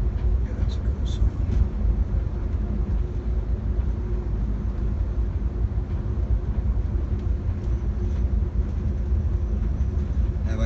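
Bus engine and road noise heard from inside the cab while cruising on a highway: a steady low rumble with an even engine hum.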